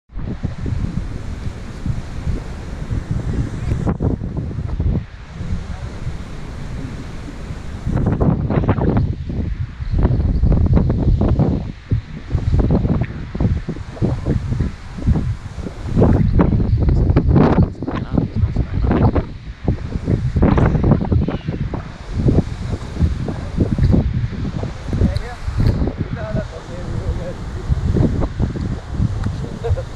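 Wind buffeting the microphone in strong, uneven gusts, heavier and more broken from about eight seconds in.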